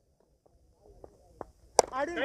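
Cricket bat striking the ball once, a single sharp crack near the end, sending the ball high in the air. A few faint taps come before it.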